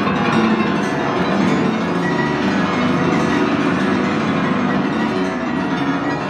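Prepared grand piano in free improvisation: a dense, sustained wash of many overlapping ringing notes, held at a steady level with no separate strikes standing out.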